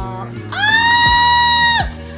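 A woman's high excited squeal, rising at the start and then held steady for over a second before cutting off, over background music.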